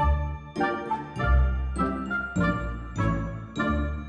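String trio of violin, viola and cello playing classical chamber music, with strong chords struck about every half-second over a sustained low cello line.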